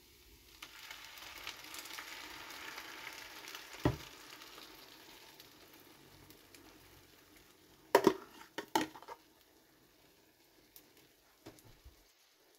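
Beaten eggs poured into a hot pan of frying bacon, tortilla pieces and zucchini, sizzling up under a second in and dying down after about five seconds. A knock comes near four seconds, and a few sharp knocks around eight seconds in are the loudest sounds.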